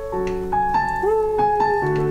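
Digital piano playing a slow melody of held notes over sustained chords: the kind of tune wedding hosts commonly use for ceremonies.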